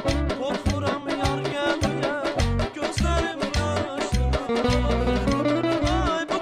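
A man singing an Azerbaijani song in a wavering, heavily ornamented melody. He is accompanied by a garmon (Azerbaijani button accordion) and a steady rhythm of low drum beats.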